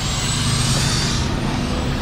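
Heavy truck engine running with a steady low rumble, and a brief hiss of air from about half a second in.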